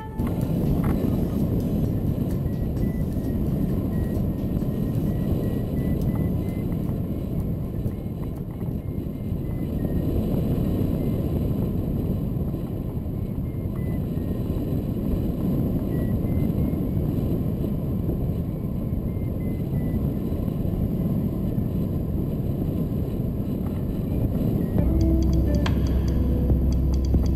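Airflow rushing over a camera mounted on a hang glider in flight, a loud, steady low rumble. A flight variometer beeps faintly through it in short tones that drift up and down in pitch. Steady low musical tones come in about a second before the end.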